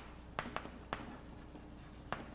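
Chalk tapping and scratching on a chalkboard as a word is written, with a few short, sharp taps in the first second.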